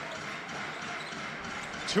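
A basketball being dribbled on a hardwood court over the steady murmur of an arena crowd.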